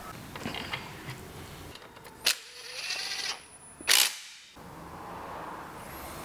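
Handling of metal parts and hand tools on a wooden workbench during gearbox reassembly: two sharp clicks about a second and a half apart, with a short mechanical rattle between them.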